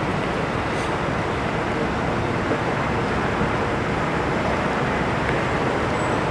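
Steady outdoor rumble and hiss with no clear tone, rhythm or sudden event.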